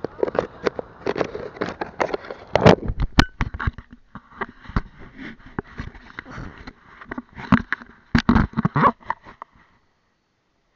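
Handling noise on a small action camera's microphone: irregular knocks, scraping and sand crunching against the camera body as it is handled and set down in beach sand. The noise stops abruptly about nine and a half seconds in.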